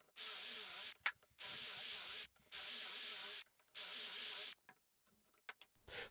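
Cordless drill running in four short bursts of just under a second each, with a wavering motor whine, as it drills dowel holes into fir through the guide bushings of a metal doweling jig.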